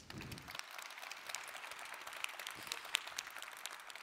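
Audience applauding, a dense patter of many hands clapping at a steady level.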